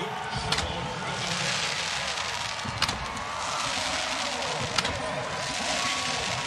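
Stadium crowd noise at the end of a college football game: a steady roar of cheering, with indistinct voices and a few sharp clicks.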